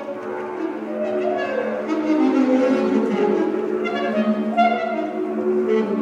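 Free-improvised duo of a bowed double bass and an alto saxophone: the bass holds one steady bowed note while the saxophone plays shifting, wavering phrases above it.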